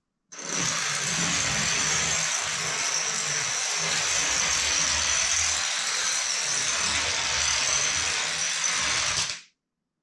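A long run of LEGO-brick dominoes, each a stack of five 1x3 bricks, toppling one into the next on a tabletop: a rapid, unbroken clatter of plastic clicking over low thumps. It begins a moment in, runs for about nine seconds and stops abruptly as the last dominoes fall.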